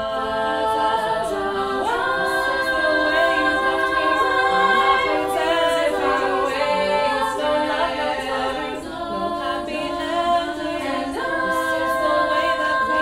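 Female a cappella group of six voices singing sustained, layered chords. A new chord comes in about two seconds in, and another near the end.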